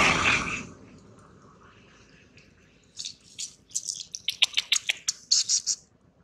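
A loud rushing noise fades out within the first second. From about halfway in, a baby monkey suckles at a rubber bottle nipple, making quick wet clicking and smacking sounds, several a second.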